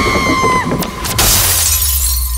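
Horror-trailer sound design: a high held tone cuts off a third of the way in, then two sharp hits and a bright crash like shattering glass, over a steady low rumble.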